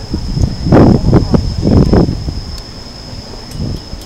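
Gusts of wind buffeting the microphone: a few loud, low, rumbling bursts in the first half, then a weaker one near the end.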